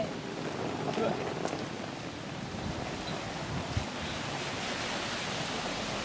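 Two hard-shell suitcases rolling over wet asphalt, making a steady hiss and rumble with a few faint voices early on.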